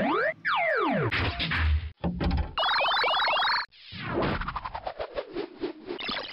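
Electronic cartoon-style sound effects standing in for a robot analysing a pill: a long falling glide in the first two seconds, a quick run of rising bleeps in the middle, then a fast rattle of clicks to the end.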